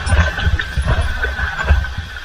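Wind buffeting and handling rumble on a handheld camera's microphone, with several short knocks, over a steady hiss of falling water from a waterfall.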